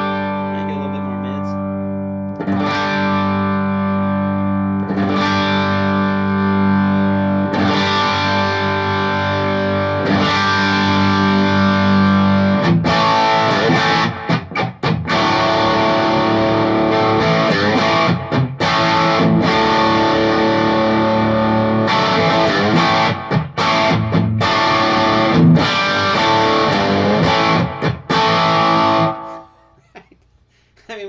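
Strat-style electric guitar with Lollar pickups, boosted by a Wampler Tumnus Deluxe into a lightly overdriven Divided by 13 BTR 23 amp, with a little reverb. Chords are struck and left to ring every couple of seconds, then from about halfway there is busier strumming with short choppy stops. It grows louder as the pedal's level knob is turned up, and the playing ends just before the end.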